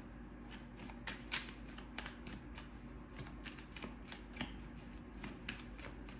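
A deck of tarot cards shuffled by hand, giving irregular quick flicks and taps of card against card, with a faint steady low hum underneath.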